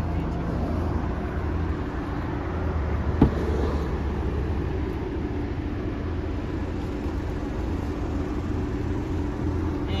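Steady low engine hum of a motor vehicle, with a single short knock about three seconds in.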